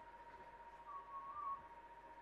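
A brief wavering whistle lasting under a second, about a second in, over a steady faint high hum.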